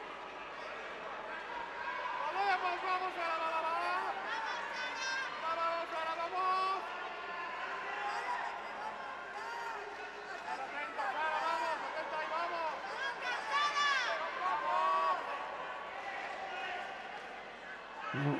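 Raised voices calling out in an arena hall, higher-pitched than the commentary, coming and going over a steady background of hall noise.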